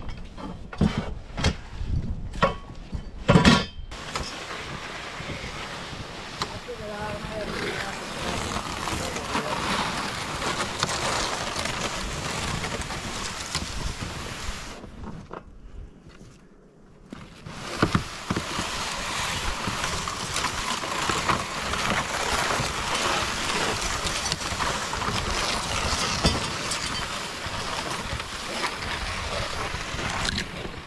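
A metal ladder stand knocks and clanks a few times as it is handled. Then a plastic sled loaded with the stand scrapes steadily as it is dragged through snow, with footsteps crunching. The scraping drops away briefly about halfway through.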